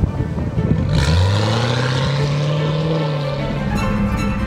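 Jaguar F-Type engine accelerating, starting suddenly about a second in and rising slowly in pitch for about two and a half seconds before fading, with background music underneath.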